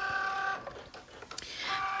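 Cricut Joy cutting machine's motors whining at a steady pitch for about half a second as it prepares the loaded vinyl and moves the blade carriage to start cutting, then running more quietly with a single click.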